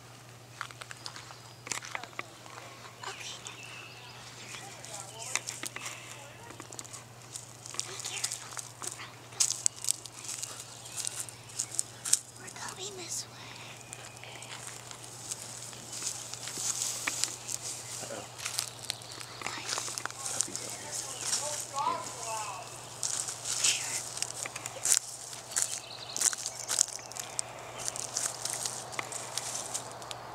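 Footsteps and rustling through tall grass and dry brush, with irregular crackles of twigs underfoot, over a steady low hum.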